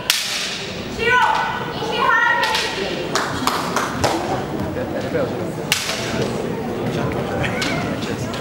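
Kendo bout: a sharp crack of bamboo shinai striking right at the start, then two loud kiai shouts about one and two seconds in, followed by scattered sharp knocks of shinai and footwork on the wooden floor.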